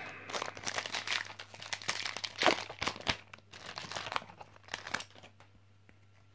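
Foil Yu-Gi-Oh booster pack wrapper being torn open and crinkled by hand, an irregular crackle that stops about five seconds in.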